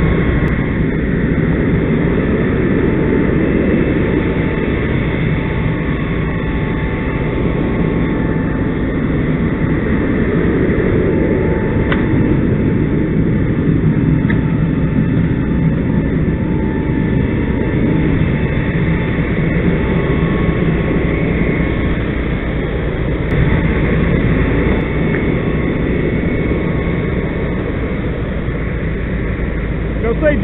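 Fire engine's diesel engine and pump running steadily at close range, a constant loud drone with faint steady whine tones.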